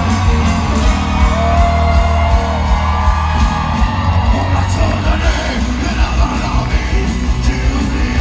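Live rock band, with drums, bass and electric guitar, and a male singer belting into a handheld microphone, heard from the audience through the arena's PA. One note is held for over a second, starting about a second in.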